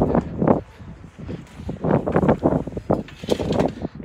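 A steel diamond-plate hatch lid in a flatbed truck bed being handled and lifted open to uncover the gooseneck hitch ball, giving irregular knocks and rattles in three bunches.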